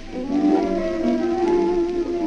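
A 1923 tango orquesta típica on an acoustic 78 rpm shellac record: bandoneons and violins holding long notes over piano and double bass, under the faint hiss of the old disc.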